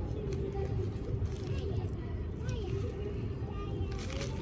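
Steady low rumble of distant road traffic with a faint wavering hum, and a few light ticks and rustles from a plastic bag of sunflower seeds as a young hooded crow pecks into it.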